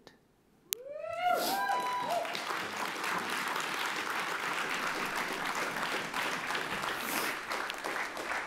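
Audience applause in a large hall: a single whoop rises and falls about a second in, then steady clapping runs on for several seconds and starts to fade near the end.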